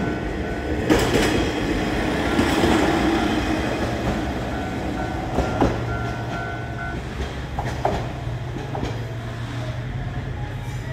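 Japanese level-crossing warning bell ringing in a repeating pattern, over the rumble and wheel knocks of a train passing the crossing.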